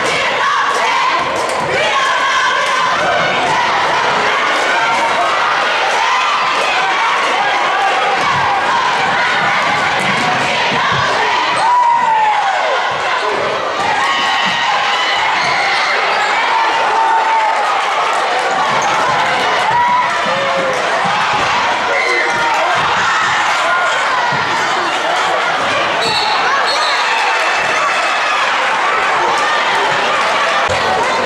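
Basketball game sound in a gym: a basketball dribbling on the hardwood floor, sneakers squeaking now and then, and spectators talking and calling out.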